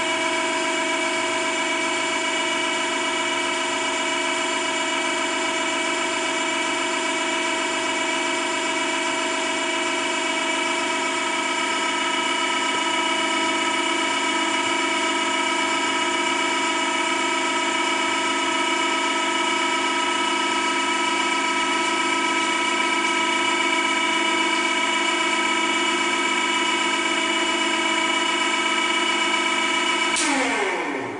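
Hydraulic power unit of a Schiavi HFBs 50-25 press brake, its electric motor and pump running unloaded with a steady whine made of several even tones that hold unchanged throughout.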